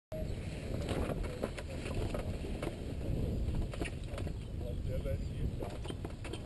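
Wind buffeting a microphone mounted on a hang glider's frame, a steady low rumble, with scattered clicks and knocks from the glider's frame, wires and harness being handled.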